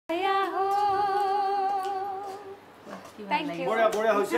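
A voice humming one long held note, with a slight wobble in pitch at its start, for about two and a half seconds. A voice starts talking about three seconds in.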